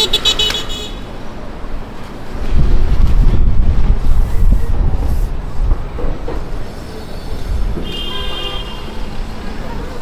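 Street traffic: a brief high-pitched horn toot, then the deep rumble of a city bus passing close by for about three seconds, and another short high toot about eight seconds in.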